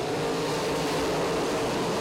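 A pack of dirt-track modified race cars with V8 engines running hard together on a green-flag restart, a dense, steady blend of many engines at once.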